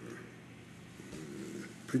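A quiet pause in a man's speech: faint room tone, with a soft, low murmur of his voice about a second in.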